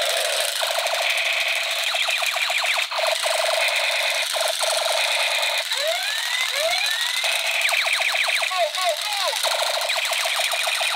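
Battery-powered toy guns playing their electronic firing effects through small built-in speakers, thin and tinny with no low end. Fast machine-gun rattles run over a steady electronic alarm-like tone, and falling laser zaps come in two groups, around the middle and again near the end.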